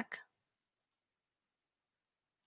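Near silence with a faint computer mouse click or two as a dropdown menu is opened on screen.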